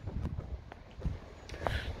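Quiet outdoor background with a few light ticks and scuffs from footsteps and handling of the hand-held camera as it is carried along the car.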